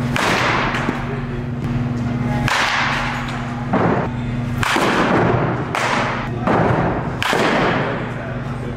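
About seven sharp cracks of baseball bats hitting pitched balls, each ringing out and dying away in a large indoor batting facility. The cracks come at uneven intervals, closer together in the second half.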